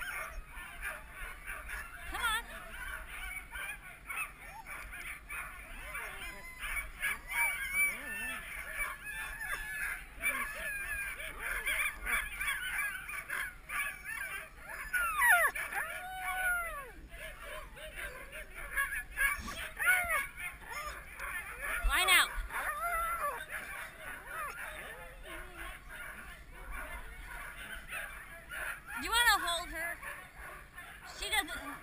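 A team of Siberian husky sled dogs yelping, whining and howling together, overlapping high cries that rise and fall in pitch, louder about halfway through and again near the end. This is the eager clamour of sled dogs being harnessed and hooked up for a run.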